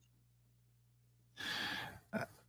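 Near silence, then one audible breath into a close microphone, about half a second long, near the end.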